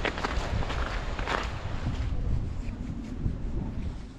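Wind buffeting the microphone as a low rumble, with irregular crunching steps on the trail. It fades down near the end.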